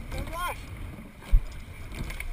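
Coxed sweep rowing shell underway at full pressure: a steady low rush of water and wind on the microphone, with one sharp low knock about one and a half seconds in.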